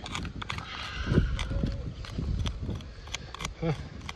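Metal screwdriver tip picking and scraping at shale rock, an irregular run of clicks and scrapes.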